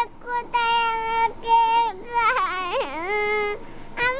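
A young girl crying in long, high wails that waver and break about two seconds in, then trail off near the end.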